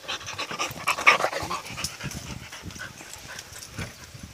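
Rottweiler-mix puppy and her collie-mix mother panting and scuffling close to the microphone in rough play, with a louder flurry about a second in.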